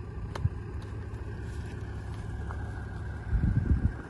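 Wind rumbling steadily on the microphone, with stronger gusts buffeting it near the end. There is one faint click about a third of a second in.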